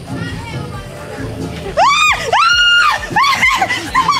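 A woman screaming as she is spun round: three high-pitched cries, each rising and falling, starting a little under two seconds in. They are thrill-and-fright screams from being whirled on a spinning pole.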